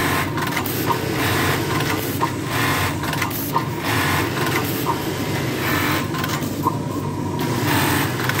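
Ouris automatic button-sewing machine at work: a steady machine hum under repeated short bursts of sewing, with a sharp tick every second and a half or so.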